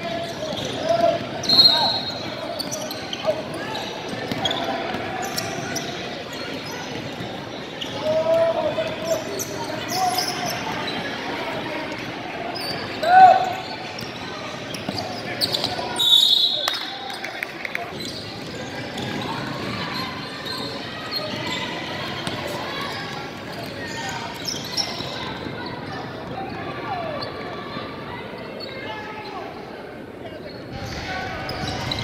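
Basketball game sounds in an echoing gym: a ball bouncing on the hardwood court under the steady hubbub of spectators and players talking and calling out, with a few louder shouts.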